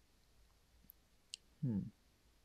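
A single short, sharp, high-pitched click a little over a second in, followed by a murmured "hmm".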